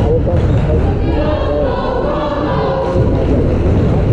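Several voices singing held, gliding notes over a steady crowd murmur in a large gymnasium.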